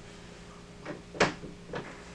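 A bedroom door being pushed shut: three short knocks close together, the middle one the loudest, a sharp bang about a second in.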